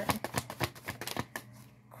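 A deck of tarot cards shuffled by hand: a quick run of light card flicks and slaps, thinning out about a second and a half in.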